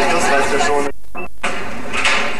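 Indistinct voices over a loud, noisy background din, with a brief gap about a second in where nearly all sound drops out.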